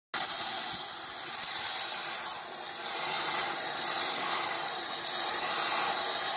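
Oxy-fuel gas torch hissing steadily as its flame heats a steel bracket.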